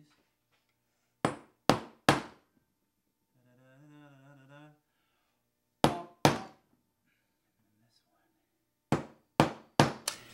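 Hammer striking a prick punch on metal flat bar to mark hole centres for drilling. There are sharp metallic taps in small groups: three quick ones, then two, then a few more near the end.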